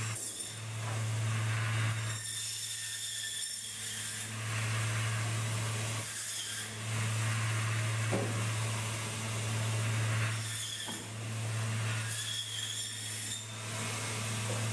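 Braher Medoc table saw running with a steady motor hum while its blade cuts through fish, the cutting noise changing every few seconds as each pass goes through.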